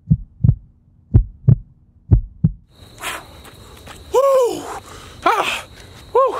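Heartbeat sound effect, a double thump about once a second over a low hum, which stops about two and a half seconds in. Then outdoor air with a steady high tone and a man's loud, voiced panting breaths after a hard run.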